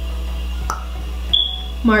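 Steady low background hum with a faint click, then a brief high-pitched beep about a second and a half in.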